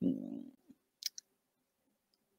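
Two quick, faint clicks about a second in, after a faint low sound that fades out in the first half second.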